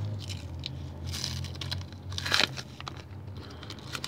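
Foil Panini sticker packet being torn open by hand, the wrapper crinkling and ripping. There is a louder rip about a second in and the loudest just past two seconds in.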